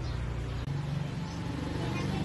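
A steady low rumble of background noise, with faint voices in it.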